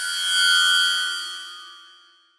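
A shimmering chime sound effect: several steady high tones over a bright hiss, swelling quickly and then fading away over about two seconds.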